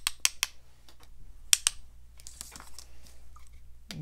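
Paintbrush tapped against pencils to flick watercolor spatters onto the paper: a quick run of light clicks at the start, then a couple of single clicks about a second and a half in, with faint handling in between.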